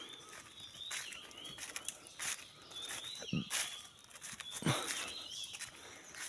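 Footsteps on a woodland path with birds calling: short curving high notes repeated about once a second. Two brief low calls come in the middle, the second the loudest.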